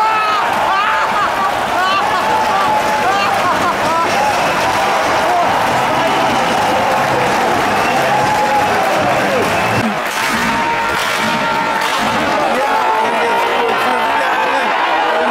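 Football crowd in the stands cheering and chanting in many voices at once, with some clapping, celebrating a home goal.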